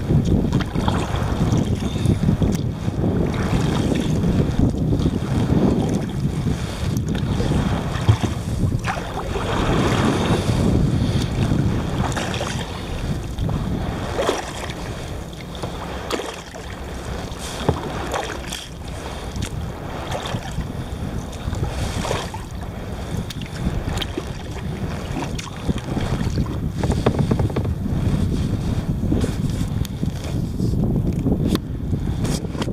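Wind buffeting the microphone in a steady low rumble, with water splashing and lapping against a kayak's hull at irregular moments as it moves over rippled sea.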